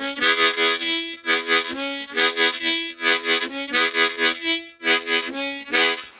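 Harmonica played in a pulsing, chugging blues rhythm: short chords breathed in and out in a pattern that repeats about once a second. It sounds clean and plain.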